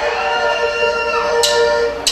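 A live Tejano band holding a sustained chord between songs, with two short sharp clicks near the end.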